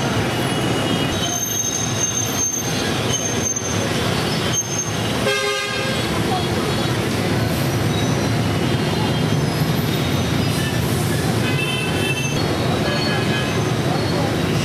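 Busy city street traffic: a continuous din of motorbike and car engines with scattered horn toots, including a longer horn blast of about half a second roughly five seconds in.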